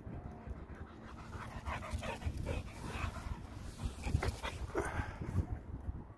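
A springer spaniel panting hard at close range, a quick irregular run of breaths through the middle few seconds, with wind rumbling on the microphone.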